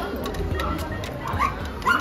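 English cocker spaniel giving two short, high-pitched cries in the second half.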